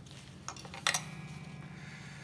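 Two light metallic clinks from a guitar's strap and its strap-lock hardware being handled while the twisted strap is worked loose, the second, about a second in, the louder. A steady low hum runs underneath.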